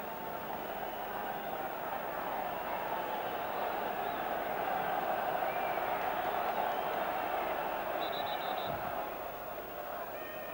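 Stadium crowd noise from the terraces of a football match, swelling over the first several seconds and easing toward the end. A few short high pips sound about eight seconds in.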